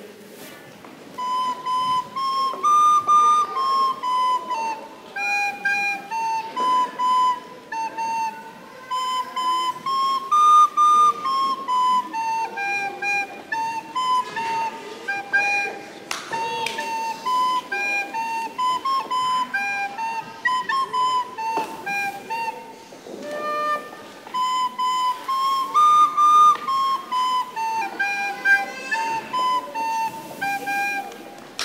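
A plastic soprano recorder played solo by a child: a simple tune of short, separate notes moving in small steps within a narrow range, its opening phrase coming back several times.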